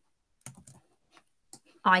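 A few short, faint clicks of a computer keyboard and mouse as a coin image is selected and copied on a slide, spread over about a second, before a voice comes in near the end.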